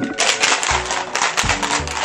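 Ice rattling inside a lidded plastic tumbler being shaken to mix a cocktail: a dense, rapid clatter starting just after the beginning, over background music with a bass line.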